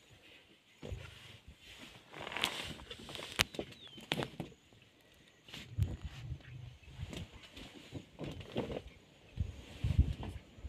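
Male lions feeding together at a carcass: irregular low growls and rumbles, with wet clicks of chewing and licking in between.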